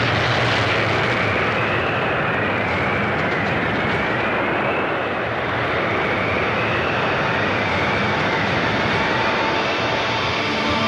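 Sound-effect intro to a punk album: a loud, dense, steady roar like aircraft engines, with a thin siren-like tone wailing up and down about once every second and a half.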